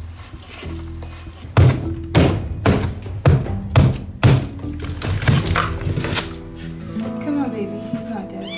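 Repeated heavy thuds of a hand striking a wall panel that has been drilled through, knocking it out to open the wall: about nine blows, roughly two a second, starting about a second and a half in.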